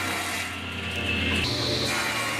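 Sliding panel table saw's circular blade cutting through the edge of a thick epoxy-and-wood tabletop, a steady sawing noise with a high whine that steps up in pitch about one and a half seconds in.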